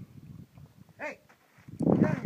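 A canine gives one short, high yelp about a second in, its pitch bending as it goes. Louder sound begins near the end.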